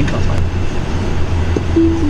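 Steady tyre and road noise inside a Tesla Model 3 cabin at motorway speed, a low even hum. Near the end a short two-note chime that steps down in pitch.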